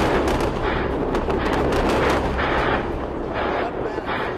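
Weapons fire: a rapid, irregular series of shots and blasts over a steady low rumble.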